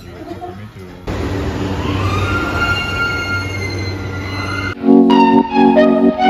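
A train running, heard as a loud rumbling noise with a whine that rises in pitch and then holds as several steady high tones. It starts about a second in and cuts off abruptly near the end, where music with mallet percussion begins.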